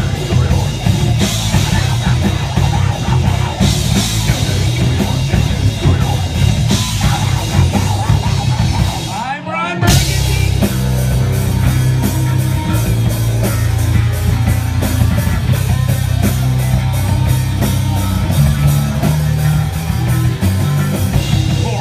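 Heavy metal band playing live: distorted electric guitars, bass and drum kit with a singer's vocals. Just before halfway the band stops for a moment, then comes back in with a fast, even beat.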